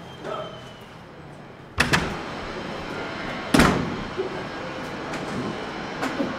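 A door banging shut twice, once about two seconds in and again, more loudly and with a heavy low thud, a couple of seconds later, over a steady background noise.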